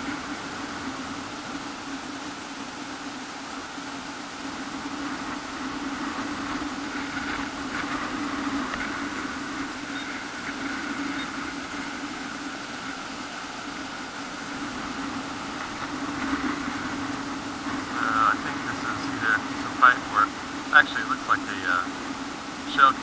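A steady electronic hum, and from about four seconds before the end a run of short, rapid electronic pulses: a Garrett pinpointer sounding off as it is probed into the sand near a target.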